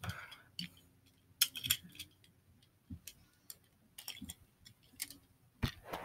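Scattered light clicks and taps of handling, about a dozen spread over several seconds, with a louder knock near the end.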